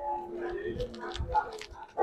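The ring of a struck school bell fading away, then faint scattered voices of students talking at a distance.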